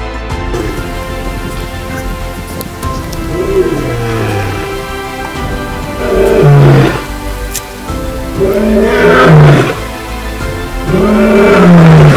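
Lion roaring in a bout that builds from a low moan into three loud roars about two and a half seconds apart, over background music.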